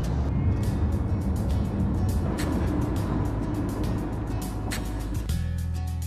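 Background music over the steady low rumble of a car driving, heard from inside the cabin. About five seconds in, the road rumble drops away and the music carries on alone.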